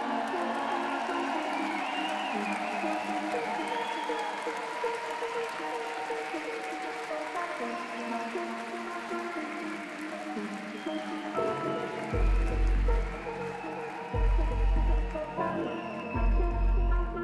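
Live electronic music: sustained synth pads and held tones, joined about twelve seconds in by deep bass notes that swell in roughly two-second pulses.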